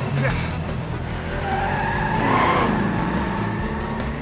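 Cartoon sound effects of several cars revving away at speed with tyres skidding, loudest about two and a half seconds in.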